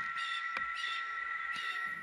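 Insects at dusk: two steady high-pitched whines with a softer chirp pulsing about three times a second above them. One sharp click about halfway through.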